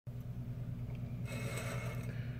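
A steady low hum, with a short scrape of handling noise in the second half as hands take hold of a plate on the table.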